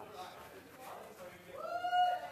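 A boy's short, high-pitched vocal sound, rising and then held, about a second and a half in, after a faint low murmur.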